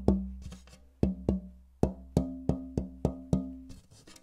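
A granadillo (Platymiscium dimorphandrum) guitar back plate being tap-tested: about ten sharp taps, a pair early and then a quick run at roughly three a second, each leaving a short low ringing note that the player hears as rosewood-like.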